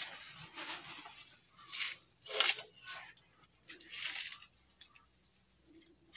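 Small hand trowel scooping and scattering dry rice hulls over garden soil: several short, irregular scraping, hissing bursts, the loudest about two and a half seconds in.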